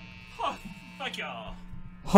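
Steady low electrical hum, with faint short bits of voice about half a second and a second in.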